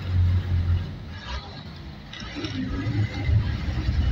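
Bus engine and road noise heard from on board: a low steady drone that drops away for about a second and a half in the middle, then comes back.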